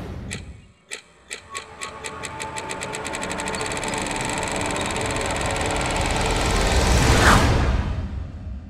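Synthesized outro sound effect: a string of sharp clicks that speed up from a few a second into a continuous buzz, with a low rumble swelling underneath. It builds to its loudest point in a sweep about seven seconds in.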